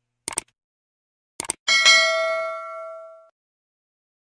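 Subscribe-button animation sound effects: two quick double mouse clicks, then a single notification-bell ding a little over one and a half seconds in, ringing and fading away over about a second and a half.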